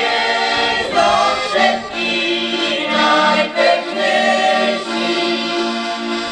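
Mixed amateur choir of women's and men's voices singing a folk song in held, sustained notes to accordion accompaniment, with a short breath between phrases about halfway through.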